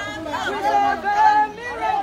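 People's voices talking, too indistinct for the words to be made out.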